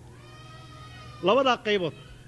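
A man lecturing into a microphone speaks one short phrase a little past a second in. Before it there is a faint, high-pitched held tone that sounds steady.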